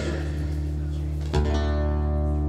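Custom handmade Wallace acoustic guitar, finger-picked: notes ring on, then new notes are struck about a second and a half in and ring out.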